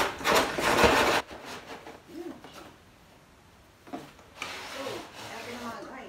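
Cardboard packaging scraping and rustling as pieces are pulled out of a box, loudest in the first second, with softer handling noise again about four seconds in.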